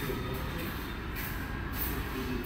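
Steady low rumble with faint hiss: background noise of the room, with no distinct event.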